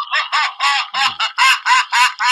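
Clown doll toy sounding off with a rapid, high-pitched mechanical cackle, a quick string of short repeated syllables, about five a second.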